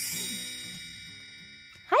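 A bright chime rings at the start and slowly fades away, its many tones dying out over nearly two seconds, as a musical transition sound effect ends.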